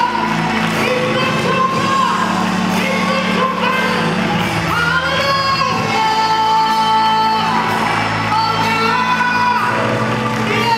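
Live gospel singing: a vocalist holds long notes that slide between pitches over a steady band backing.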